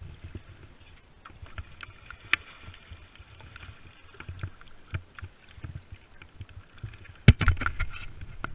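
Kayak paddle strokes in calm water: the blades dip and drip, with small clicks and knocks on the boat. A louder burst of splashing and knocks comes near the end.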